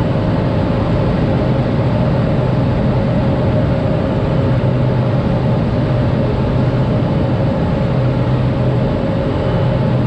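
Cabin noise of a Cessna 208 Grand Caravan in flight on final approach: its PT6A turboprop engine and propeller running steadily, a low hum with a steady higher whine above it.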